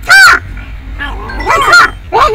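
A man's voice: a short, very loud, high-pitched shout at the start, then about a second later more strained, shouted words.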